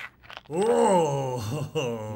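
A cartoon character's wordless vocal sound, a long groan-like voice that rises and falls in pitch, starting about half a second in after a couple of short clicks.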